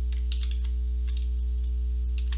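Typing on a computer keyboard: a scatter of short key clicks over a steady low electrical hum.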